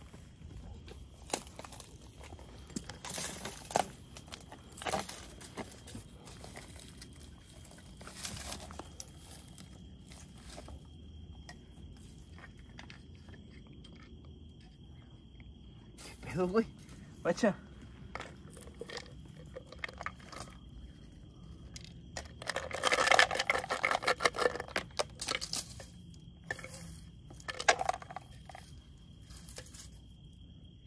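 Scraping, crunching and rustling of footsteps on rocks and dry brush and of a capped plastic tube container being handled, with a louder stretch of dense rattling and scraping about 23 to 25 seconds in. A faint steady high-pitched whine runs behind.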